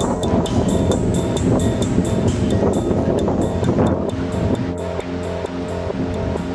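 Background music with a steady beat over held chords.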